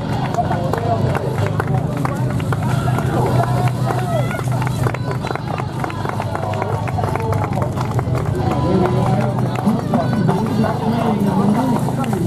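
Indistinct voices of spectators and a public-address commentator, unbroken by any clear words, over a steady low hum.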